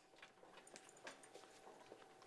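Near silence: faint courtroom room tone with scattered small clicks and knocks of bags and papers being handled as people pack up at their desks.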